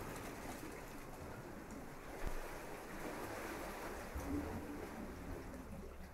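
Small waves washing onto a sandy beach, a steady even surf noise, with a brief thump about two seconds in.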